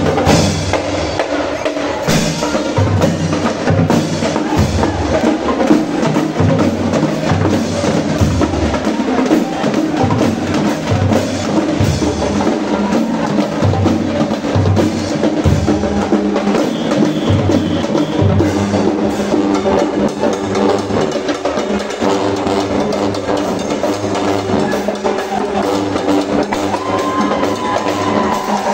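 Marching band (banda marcial) playing: a drumline of bass drums, snare drums and cymbals beats a steady rhythm under brass that holds sustained notes.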